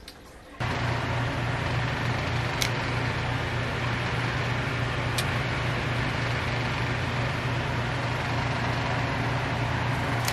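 A steady low mechanical hum, like a room fan or air-conditioning unit, starts abruptly about half a second in. Over it come two faint sharp clicks a few seconds apart, typical of scissor-type pet nail clippers snipping a cat's claws.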